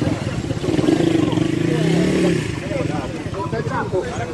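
Motorcycle engines running at idle among a crowd of people talking, with the engine pitch rising and falling briefly about two seconds in.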